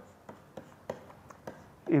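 A stylus tapping and scratching on a writing tablet as handwriting is drawn: a string of short, light clicks about every third of a second. A man's voice starts right at the end.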